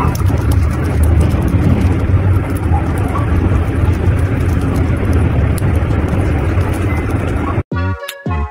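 A loud, steady low rumbling noise without music, starting and stopping abruptly with the clip.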